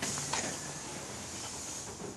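Shuttle bus's front passenger door closing with a sudden hiss and a knock about a third of a second in, the hiss fading away over the next two seconds.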